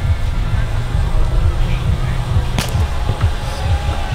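A single sharp smack of a roundnet ball being struck during a rally, about two and a half seconds in, over a steady low rumble.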